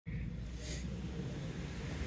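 Steady low outdoor background rumble, with a brief faint rustle about two-thirds of a second in.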